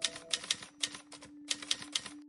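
Typewriter sound effect: keys clacking in quick, uneven runs, about a dozen strikes, as a caption is typed out on screen. Underneath runs a steady low drone of ambient music.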